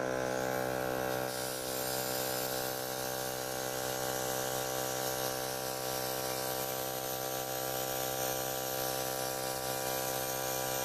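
Small airbrush compressor running with a steady hum, and compressed air hissing from a PME cake airbrush as it sprays colour over a stencil.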